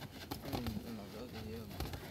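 Boxing gloves landing during sparring: a few short, scattered thuds, with faint voices in the background.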